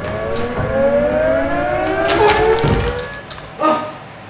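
A siren-like wail rising slowly in pitch over about three seconds, with a thud near the end.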